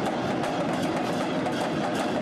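Several shoulder-slung barrel drums beaten with sticks in a fast, continuous processional rhythm.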